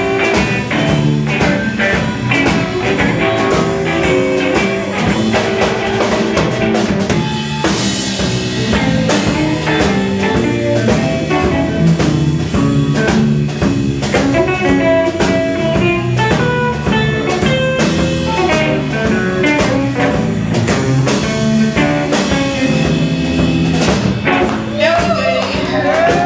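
Live blues band jamming, with guitar lines over a steady drum-kit beat.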